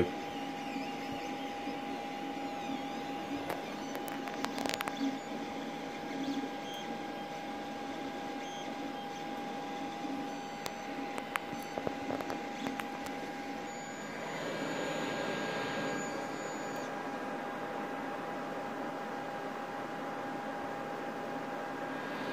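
Creality CR-X dual-extruder 3D printer running mid-print: a steady whine of its stepper motors and fans with faint scattered clicks. A little past halfway the whine drops out and a louder, noisier stretch of movement lasts about three seconds.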